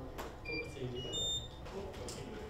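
Faint murmured voices with a click, and a few short high-pitched electronic beeps about half a second to a second and a half in.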